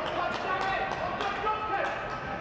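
Football players shouting on the pitch over sharp thuds of the ball being kicked, heard close with no crowd noise behind them.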